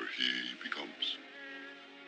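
Short broken vocal sounds, a voice making noises rather than words, for about the first second, then soft music.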